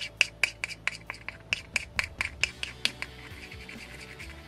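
A thin stirring stick scraping and clicking against the inside of a small plastic cup as thinned clear red paint is mixed for the airbrush. The strokes come in quick succession, about four or five a second, and stop a little before three seconds in. Faint background music runs underneath.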